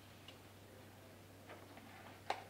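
Near silence: room tone with a steady low hum and a few faint, brief clicks, one early and a couple near the end.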